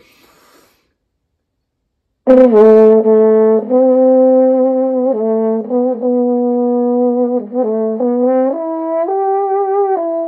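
Trombone played through a Vacchiano bucket mute: a short, smooth phrase of held notes starting about two seconds in and ending a little higher in pitch. The tone is a little brighter than the classic cotton-stuffed bucket-mute sound.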